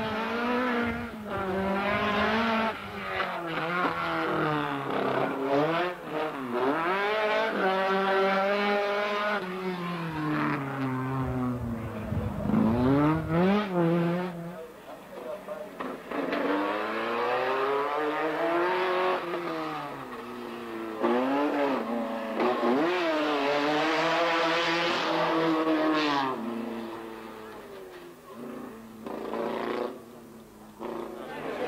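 Race car engines at high revs, the pitch climbing and dropping again and again with gear changes and lifts on the throttle as a car drives a twisting course; a first run fades about halfway through and a second car is heard revving hard soon after, fading before the end.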